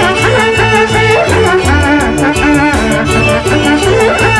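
Andean folk band playing an instrumental passage: violin melody with ornamented runs over a plucked harp bass and a steady dance beat.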